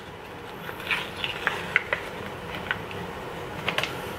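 Scattered light clicks and crinkles of food packaging being opened and handled, a pet-food meal for a cat.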